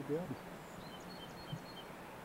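A small bird chirping faintly in a quick series of short high notes, about five of them, over a steady background hiss.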